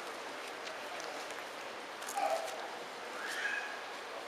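Congregation leafing through Bibles: faint paper rustling and small ticks over steady room noise. Two brief, faint voice-like sounds come about two and three seconds in, the first the loudest moment.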